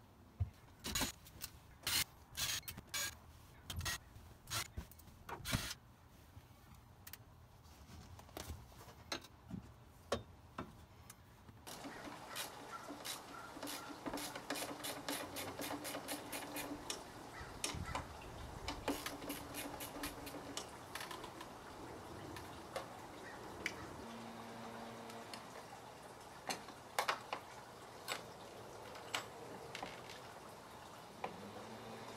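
A quick run of sharp clicks and knocks from the old canvas pop-top tent and its fittings being worked loose by hand, then a steadier background with a few scattered clicks.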